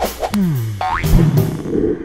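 Short comic musical sting with cartoon sound effects: a pitch that drops, then a quick rising whistle about a second in, settling into a chord that fades near the end.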